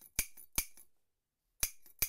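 Sharp metallic clicks of an open-frame pusher solenoid's plunger snapping in and out as it is powered through a MOSFET board. The clicks come in two pairs with a short silence between.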